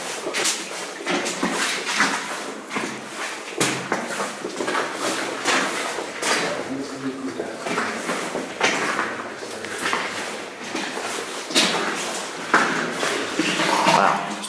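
Footsteps crunching on the gravel and loose rock floor of a mine tunnel, at about one step a second.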